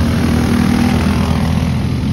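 Racing go-kart engines running at speed on the track, loud and steady.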